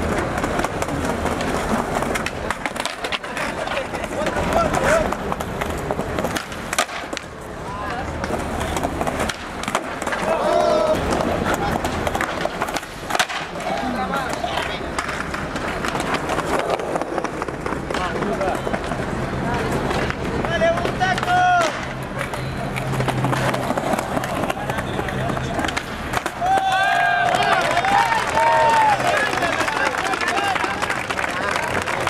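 Skateboards on stone paving: repeated tail pops, board slaps and landings clacking on the tiles, with wheels rolling between tricks. The onlooking crowd shouts and calls out at several points, loudest near the end.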